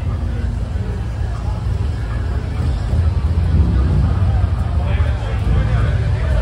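People talking in the background over a steady low rumble, the voices growing clearer near the end.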